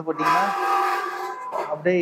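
A chair dragged across the floor, a rough scrape with a steady squeal lasting just over a second.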